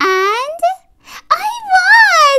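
A woman's voice making drawn-out, high, sing-song vocal sounds rather than plain words: one sound sliding upward at the start, then a wavering, up-and-down one from about the middle.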